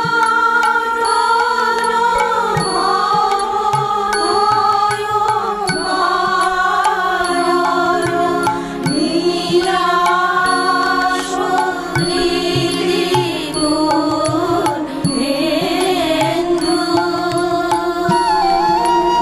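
Bengali devotional song: a voice sings a slow, gliding hymn melody over sustained instrumental accompaniment with a light regular beat.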